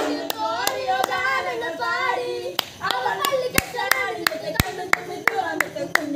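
Rhythmic hand-clapping keeping time, about two to three claps a second, with a group of voices over it.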